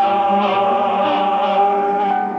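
Choir singing a choral benediction, several voices holding one long chord, with the lower parts shifting pitch under the sustained top note.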